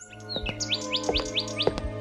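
A bird chirping a quick run of about six rising notes, over background music that starts at the same moment with steady low notes and plucked notes.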